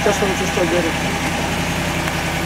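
An SUV's engine idling with a steady low hum.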